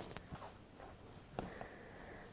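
Faint handling sounds: a few soft ticks and light rubbing as hands move a silicone mould across a plastic work board, the clearest tick about one and a half seconds in.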